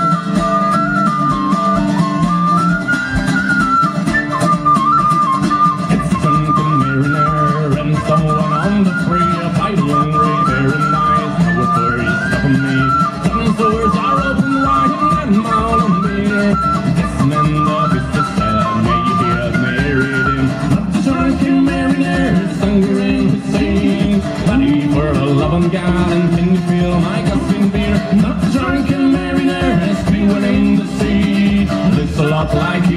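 Live Irish folk instrumental break: a tin whistle plays a lively melody over strummed strings and a steady bodhrán beat. The whistle drops out about two-thirds of the way through, leaving the strummed guitar, mandolin-family instrument and drum.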